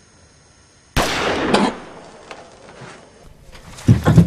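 A single loud gunshot about a second in, sudden and dying away over under a second. Another loud burst begins just as it ends.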